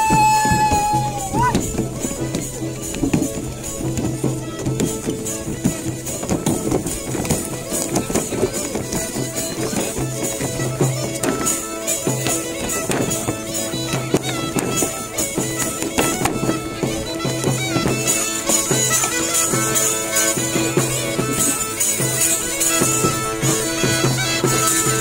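Belarusian folk dance tune played on a duda, the Belarusian bagpipe, over its steady drone, with a bubien frame drum with jingles keeping a driving beat. A brief sliding high note sounds near the start.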